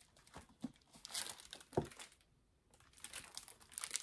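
Paper rustling as a hardcover book is opened and its pages are turned in the hands, with a soft knock just before the middle.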